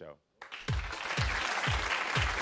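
Studio audience applauding, starting about half a second in, over show music with a steady bass-drum beat about twice a second.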